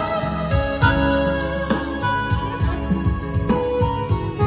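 Instrumental music with guitar over a deep, repeating bass line, played loud through a Martin F15 loudspeaker with a 40 cm woofer during a sound test.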